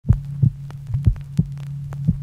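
Heartbeat-like low thumps in uneven pairs, about two a second, over a steady low hum, with faint crackle-like ticks: the produced intro of a song before the vocals come in.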